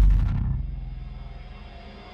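Channel intro music sting: a deep bass hit that dies away over the first second and a half, leaving a faint low hum.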